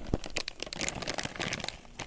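Plastic packet crinkling as it is gripped and handled, a quick run of sharp crackles.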